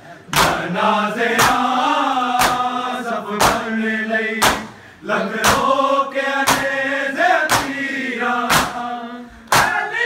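A group of men chanting a noha in unison, over a steady beat of bare-hand chest-beating (matam), about one slap a second.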